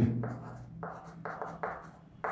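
Chalk writing on a chalkboard: a quick run of about six short scratching strokes in the second half as symbols are written.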